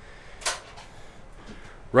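A single short, sharp clack about half a second in, from a Ford Transit's side cargo door as it reaches its fully open position.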